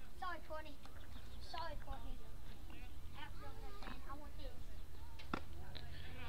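Distant voices of players and spectators calling out in short bursts across a baseball field, with a few sharp knocks.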